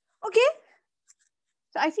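A woman's voice only: a brief vocal sound rising in pitch, then dead silence, then speech starting near the end.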